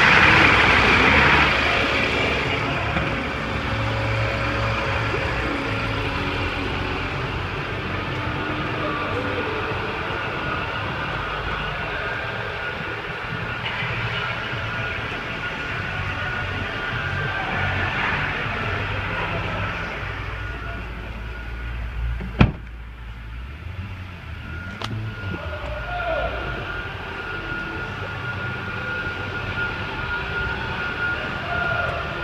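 2001 Toyota RAV4's 2.0-litre four-cylinder engine running at idle, loudest at first and steady throughout. A single sharp bang about two-thirds of the way in, a car door shutting, after which the running sounds duller.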